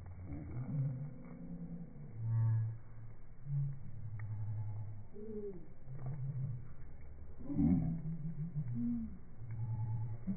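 Australian magpies' calls slowed down to a very low pitch: a run of deep, drawn-out tones with bending glides, the loudest about two and a half seconds in and near eight seconds, sounding whale-like.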